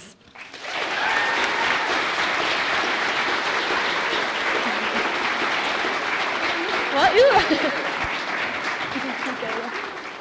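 Audience applauding to welcome a speaker, starting about a second in and fading near the end, with a brief laugh about seven seconds in.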